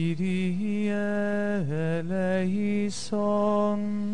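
A hymn sung slowly in long held notes that glide from one pitch to the next, with a brief break for breath about three seconds in.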